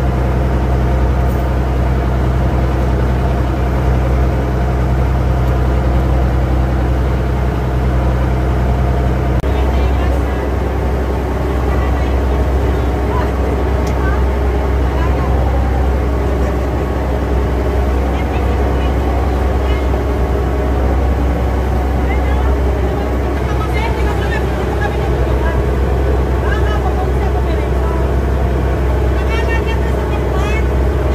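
The engine of a small motor sampan running steadily as the boat is under way, a constant low hum whose note shifts slightly about ten seconds in.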